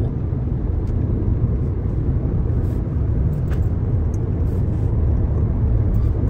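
Nissan car on the move, heard from inside the cabin: a steady low rumble of road and engine noise.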